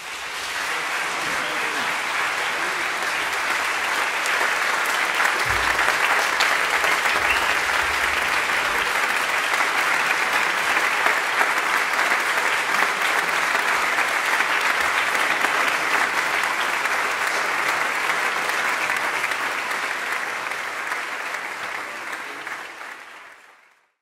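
Concert audience applauding, building over the first few seconds and holding steady, then fading out near the end.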